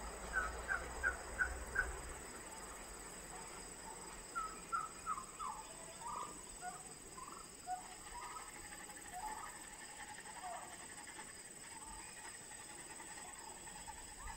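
Domestic turkeys calling: a quick run of five short yelps, then a looser string of short, falling calls from about four seconds in until near eleven seconds, over a faint, steady high whine.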